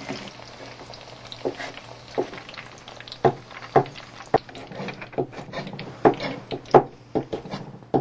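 Kitchen knife slicing button mushrooms and a green bell pepper on a plastic cutting board: irregular knocks of the blade hitting the board, coming faster in the second half.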